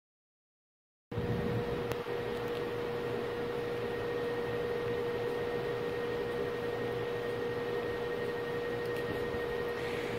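Silence for about the first second, then a steady background hum with a constant mid-pitched tone, as from a fan or running equipment.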